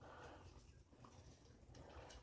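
Near silence: room tone with a couple of faint ticks from a rubber resistance band being handled.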